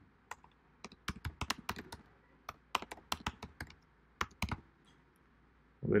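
Typing on a computer keyboard: irregular bursts of keystrokes as a file name is entered, stopping about a second before the end.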